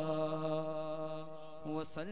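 A male voice singing a naat, holding one long drawn-out note with no instruments heard, with a short hiss near the end.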